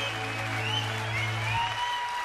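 The band's last chord rings out, with a low bass note held until about a second and a half in, under audience applause and whistling.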